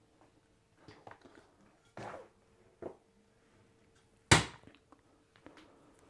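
Screen-printing equipment being handled: a few faint taps and rustles, then one sharp clack about four seconds in, as the hinged screen frame is lifted off the freshly printed shirt.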